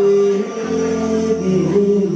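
A live band playing, with electric guitar and keyboard holding sustained notes. A low bass note comes in about two-thirds of a second in.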